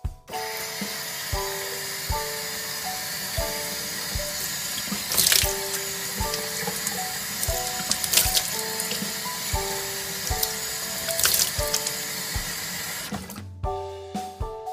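Bathroom sink tap running steadily while a face is washed in the stream, with three louder splashes about five, eight and eleven seconds in; the water stops about a second before the end. Background music with piano notes and a steady beat plays over it.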